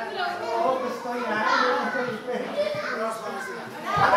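Indistinct chatter of several people talking at once, with children's voices among them.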